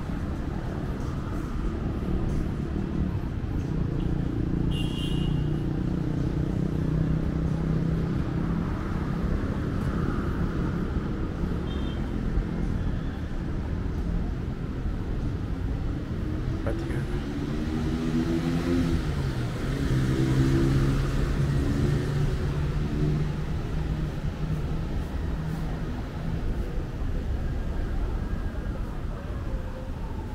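City street ambience: a steady rumble of road traffic, with people's voices talking nearby at times.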